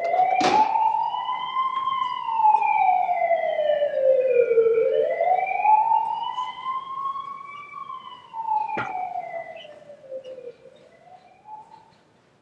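Siren wailing in slow rises and falls, about six seconds to each cycle, fading away over the last few seconds. A sharp click comes about half a second in and another near nine seconds.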